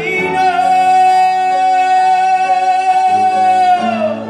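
A male singer holds one long high note over sustained piano chords, letting it fall away just before the end.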